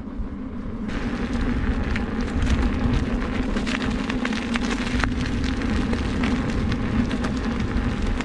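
Electric unicycle's 16-inch tyre rolling over wet grit and mud, a dense crackle of loose stones and spray that starts about a second in, over a steady hum from the wheel.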